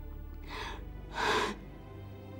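A woman crying, with two breathy gasps, the second louder, over soft background music.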